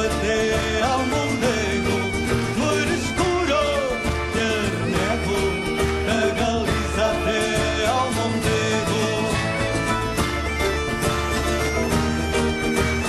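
Instrumental passage of a Portuguese folk song: a Galician bagpipe (gaita-de-foles) plays the melody over its steady drone, backed by strummed acoustic guitars, a mandolin-type plucked instrument and a drum beat.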